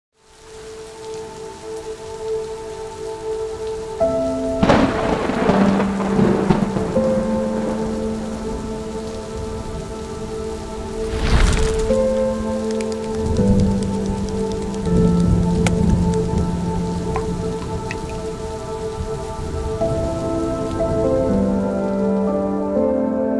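Ambient music of slow held chords laid over steady heavy rain, with two rumbling thunder crashes, the first about four and a half seconds in and the second about eleven seconds in.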